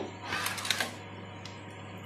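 Hands working a meat thermometer probe into a beef joint in a roasting pot: a short burst of clicking and scraping about half a second in, then only a faint steady low hum.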